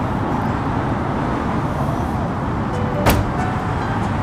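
Steady background rumble, with one sharp small click about three seconds in as a washer comes off the end of the blower motor shaft.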